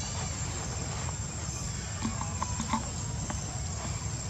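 Outdoor ambience: a steady low rumble and a constant thin high-pitched drone, with a few small clicks and several short faint calls about two to three seconds in.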